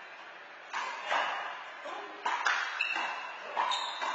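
A handball rally on an indoor court: several sharp smacks of the small rubber ball struck by hand and rebounding off the front wall and floor, each ringing briefly in the large hall.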